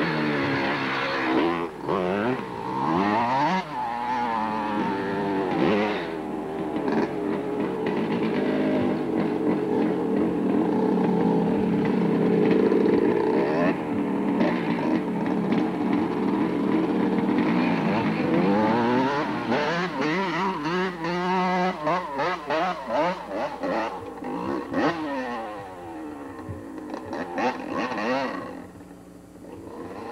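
Yamaha YZ250 two-stroke dirt bike engine revving up and down over and over while being ridden, its pitch rising and falling. It is loudest mid-way and fades away near the end.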